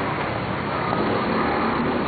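Road traffic noise from cars on the street alongside: a steady wash of noise without distinct events.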